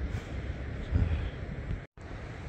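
Wind rumbling on the microphone outdoors on a beach: a steady low noise with no distinct events, broken by a brief dead gap near the end.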